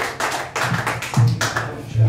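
Irregular sharp taps, with a low electric bass guitar note sounding about a second in and held again at the end.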